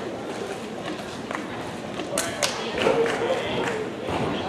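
Background voices of people talking in a large hall, with two sharp knocks about two seconds in, a quarter of a second apart.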